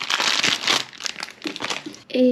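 Thin plastic wrapper crinkling as a squishy stress ball is pulled out of it. The crinkling is densest in the first second and then thins out.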